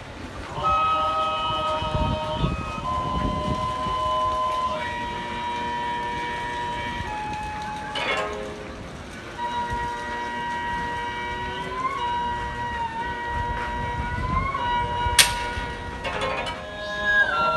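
Gagaku shrine music played live on wind instruments: long held chord tones under a lead line that slides up in pitch a few times near the end. A sharp click sounds near the end.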